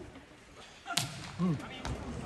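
A volleyball serve: a sharp smack of the hand on the ball about a second in, a short shout just after, and a thump near the end as the ball is played on the receiving side, over the murmur of the arena crowd.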